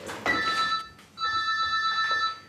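Mobile phone ringing with an electronic ringtone of high steady tones, heard twice: a short ring about a quarter second in and a longer one from just after a second in.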